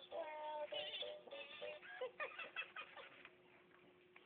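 Elmo Live Encore talking toy singing in Elmo's high voice with backing music, played through the toy's small speaker after its button is pressed; the song stops about three seconds in.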